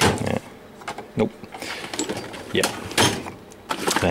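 Steel Craftsman tool-chest drawers being shut and pulled open, with several metal clatters and scrapes of the drawers on their slides and of loose cutters and bits shifting inside.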